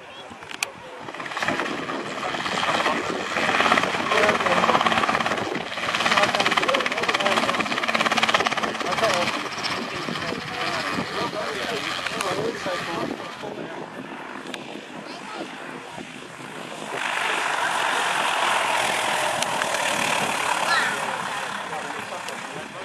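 Light-aircraft piston engines running close by on the ground, rising and falling in level: a single-engine plane taxiing, then a small piston helicopter, then another single-engine plane, with voices in the background.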